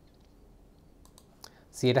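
Quiet room tone with a few faint, sharp clicks about a second in. A voice starts speaking near the end.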